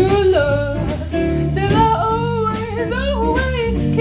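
Live swing jazz band playing: a woman sings a held, wavering melody over electric guitar, bass guitar and drums keeping a steady beat.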